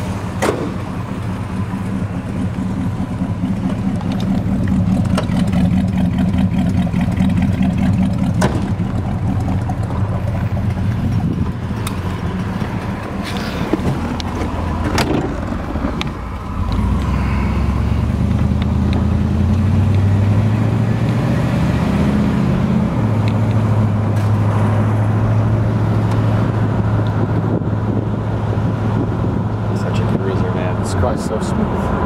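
1968 Buick GS 400's original 400 cubic inch V8 running, first at idle. About halfway through there are a couple of sharp knocks. Then the car pulls away, the engine note climbing and then dropping to a steady cruise.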